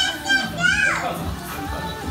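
Children's voices shouting and squealing over background music, with one high voice sliding down in pitch about half a second in.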